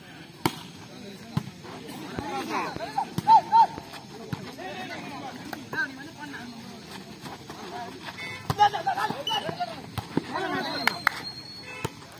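A volleyball rally: several sharp slaps of the ball being served and struck by hand, the first just after the serve toss, with players and onlookers shouting between the hits.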